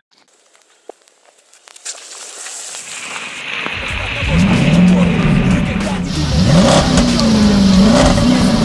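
Chevrolet Spark hatchback driving through rainwater. The tyres hiss and splash, getting louder from about two seconds in. From about four seconds a loud low rumble and an engine note come in, rising and falling as the car revs and slows.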